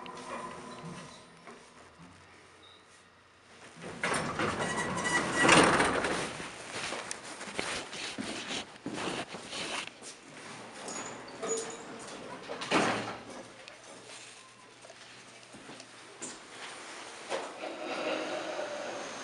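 Vintage 1970s hydraulic elevator: the car's hum dies away near the start, and about four seconds in its sliding doors open with a loud rolling rush. Scattered knocks and rustles follow.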